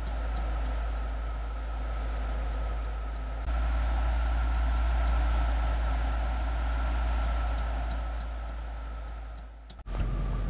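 Light, steady clock-like ticking, a couple of ticks a second, over a steady low hum. The whole bed steps up in level about three and a half seconds in and drops out abruptly just before the end.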